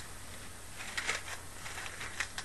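Quiet pause: a steady low hum with a few faint clicks or rustles about a second in.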